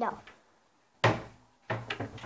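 A cupboard door being opened and shut, with a sharp knock about a second in and another bump near the end.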